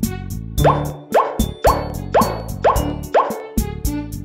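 Six short rising 'plop' cartoon sound effects, about half a second apart, over children's background music.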